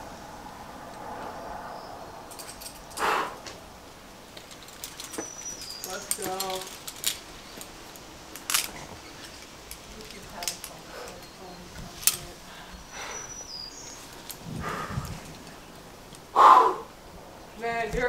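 Outdoor ambience with faint distant voices, a few short high bird chirps and scattered sharp clicks of climbing hardware. A louder harsh call stands out near the end.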